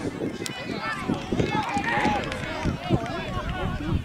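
Many overlapping voices, players and sideline spectators calling out across a soccer field, with no one voice standing out.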